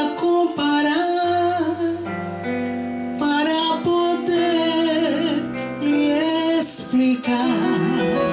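A woman singing a slow romantic song into a handheld microphone, her voice amplified, with long held notes and vibrato over a steady instrumental accompaniment.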